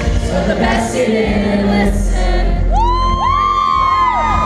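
Live band playing with a male lead singer through the venue's sound system. From about three seconds in, several fans close by scream long, high-pitched whoops over the music.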